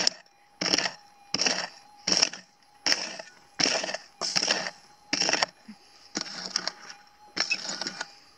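A prospecting pick striking into stony red soil, a steady run of about ten blows a little more than one a second, digging down to a metal detector's target.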